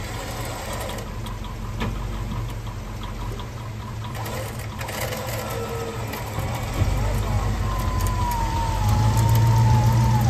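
Engine of a vintage off-road 4x4 idling with a steady low hum, growing louder in the last few seconds.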